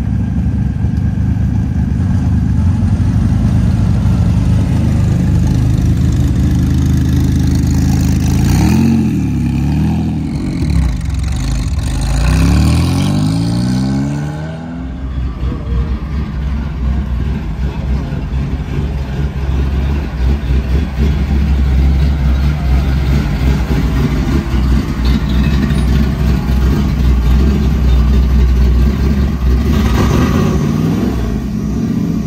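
Sports car engines as cars pull in at low speed. An engine runs steadily, then revs up twice, about 9 seconds in and again from about 11 to 14 seconds, rising in pitch each time. From about 15 seconds a deep, uneven low rumble runs on.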